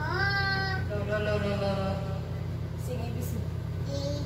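A toddler's high voice: a call that glides upward in the first second, then a second, steadier call about a second later, over a steady low hum.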